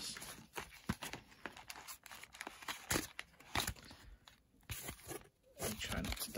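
Cardboard backing of a trading-card blister pack being torn open by hand, a run of short, irregular rips and crackles.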